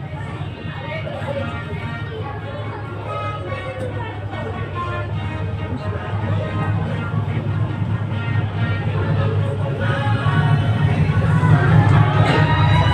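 Dirt-track race car engines running at low speed on a parade lap, a steady low drone that grows louder near the end as the cars come close, with music over it.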